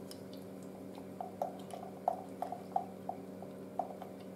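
Faint, irregular light ticks of a spatula against a glass beaker as salt is worked into a thick polymer gel, about ten small clicks over a couple of seconds, with a low steady hum underneath.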